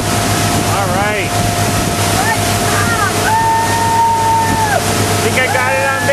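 Motorboat engine running at a steady drone, with wind buffeting the microphone. Over it a voice calls out in drawn-out cries, one held for over a second in the second half.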